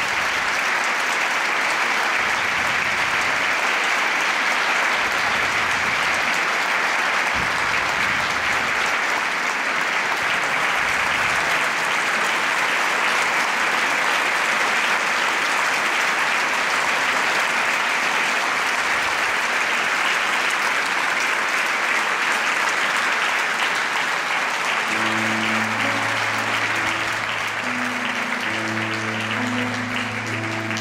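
Audience applauding, loud and sustained. About five seconds before the end, a grand piano starts playing low held notes under the applause.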